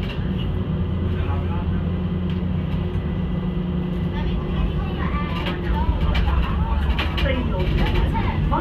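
Steady low hum of a moving tram heard from inside the car, with passengers' voices chattering in the background, more noticeably in the second half.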